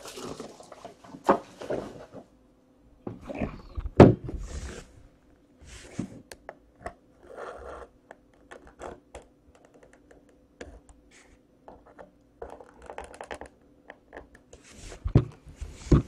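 Knocks, clicks and scraping of a hard black briefcase-style card box being handled and worked at with scissors. The loudest thump comes about four seconds in, and more knocks bunch up near the end.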